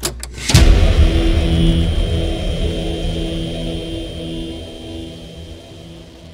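Logo-sting sound effect: a sudden heavy hit about half a second in, followed by a long, low rumble with a steady hum that slowly fades away.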